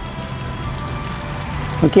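Water running out of the side of the opened Karcher K2 pressure washer pump assembly and splashing below. The water is escaping past a failed seal, the leak that stops the pump from building pressure.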